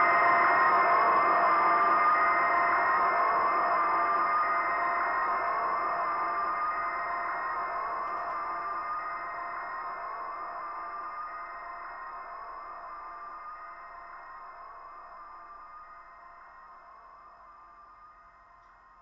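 Electronic drone of several held tones with a gently warbling tone near the middle, fading out slowly and evenly until it is faint at the end.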